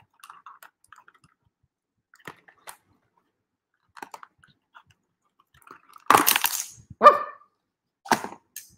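Cardboard toy box and its packaging being handled: faint rustles and clicks, then two loud, short bursts of packaging noise about six and seven seconds in as the figure is pulled free.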